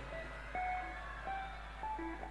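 A few quiet single notes from the band's instruments on a concert stage, each held briefly, one after another with gaps between them.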